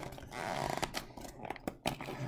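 Glued cardboard flap of a trading-card box being pried and torn open by hand: a rasping tear from about half a second in, followed by several light clicks and taps of the cardboard.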